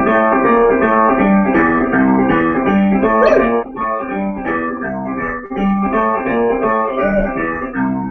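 Digital keyboard playing a C chord (G, C, E, G) in a jazz and blues style: held chords over a bass note that repeats in a steady rhythm.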